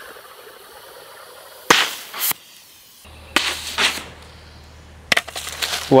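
Compressed-air water-bottle rocket launching. About two seconds in, the cork blows out of the pressurised bottle with a sharp pop and a short rush of air and water. A noisy rustling burst follows a second later, and a sharp knock comes near the end.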